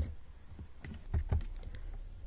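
A handful of separate clicks from computer keyboard keys, spread unevenly through the pause.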